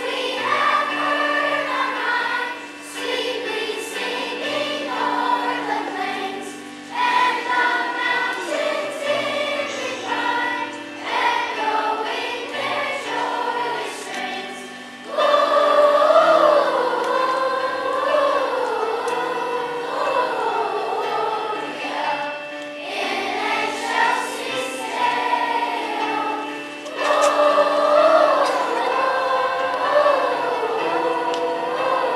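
Children's choir singing a song over steady instrumental accompaniment, growing louder about halfway through and again near the end.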